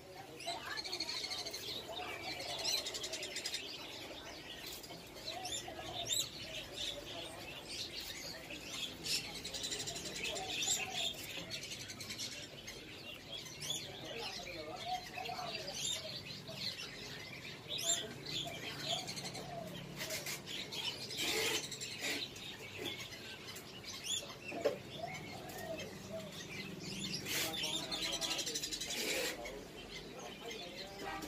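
A shop full of caged birds chirping and calling all at once: many overlapping high chirps, with lower curved calls mixed in.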